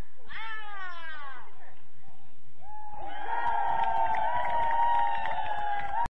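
Players shouting on the pitch: a high call falling in pitch about half a second in, then a long held shout from about three seconds in.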